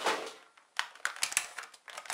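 Thin clear plastic display case clicking and crackling as it is handled and a large speed cube is pulled free of it: a quick irregular run of light clicks lasting about a second.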